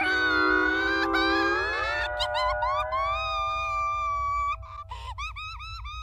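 A cartoon little girl's loud wailing cry over background music, with several notes sliding upward together about two seconds in and a wavering high wail after, quieter near the end.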